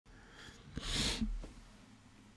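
A short, breathy burst of air from a man, about a second into an otherwise quiet room, like a forceful breath or sneeze.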